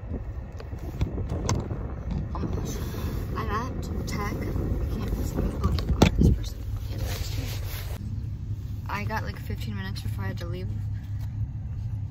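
Low, steady rumble inside a car, with one loud knock about halfway through as the phone is handled. Faint murmured speech comes and goes.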